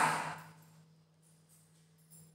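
A voice trails off in the first half second. Then near silence: room tone with a faint steady low hum.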